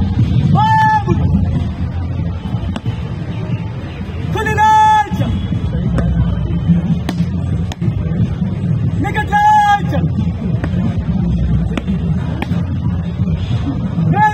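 Loud shouted drill words of command, each drawn out on one held pitch for about half a second, heard three times: about four and a half seconds in, about nine and a half seconds in, and at the end. A steady low outdoor rumble runs underneath.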